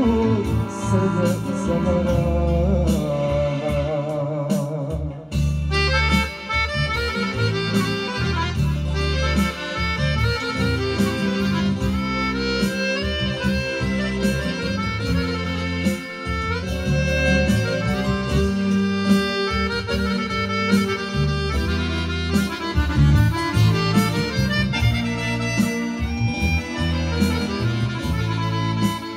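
Live accordion and electronic keyboard playing a lively tune over a steady bass beat. A man sings into a microphone during the first few seconds, and the band plays on after a change of section about five seconds in.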